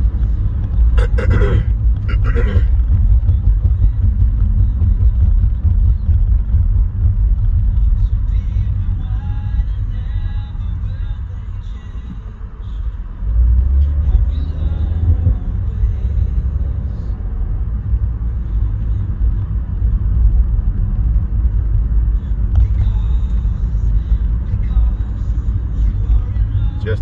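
Low, steady road and engine rumble inside a car cabin while driving along a city street, easing off briefly about halfway through and then building again.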